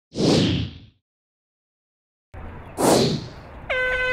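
A swoosh sound effect over the opening, then dead silence; outdoor track ambience cuts in with another swoosh, and near the end a steady electronic horn tone sounds, the start signal for the hurdles race.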